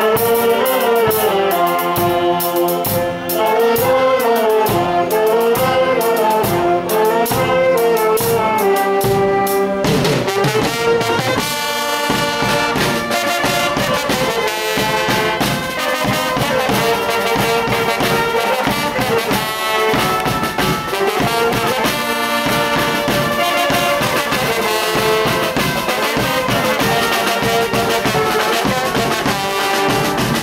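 A banda brass band playing: saxophones carry a winding melody over a steady drum beat, and at about ten seconds the full band with trombones and sousaphone comes in, fuller.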